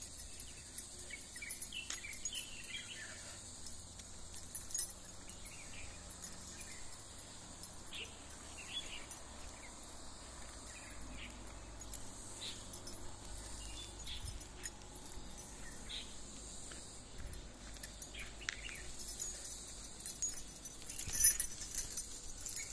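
Quiet outdoor ambience while walking, with scattered faint chirps and ticks; near the end a short burst of metallic jingling, like a dog's collar tags and leash clip.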